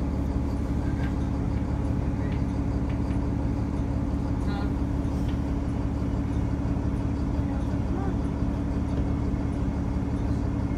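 Steady low hum of a city bus's engine idling, heard from inside the passenger cabin while the bus waits at a rail crossing.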